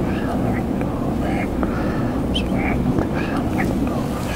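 A mosque congregation murmuring prayers softly and unevenly while in prostration, over a steady low hum in the hall.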